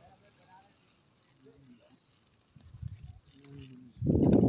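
Faint voices in short, broken snatches, with a brief low rumble about two and a half seconds in.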